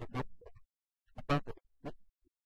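A man speaking in short phrases with a brief pause about halfway through; the words are not made out.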